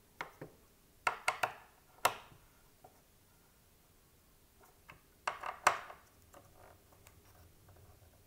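Sharp clicks and taps of an orange Torx screwdriver on the metal retention-frame screws of an sWRX8 Threadripper Pro socket as they are turned. The clicks come in two quick clusters, about a second in and about five seconds in, with single clicks in between.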